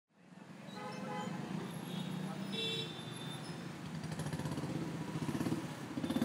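City street ambience fading in: motor traffic running and people's voices, with a short horn toot about two and a half seconds in and an engine growing louder near the end.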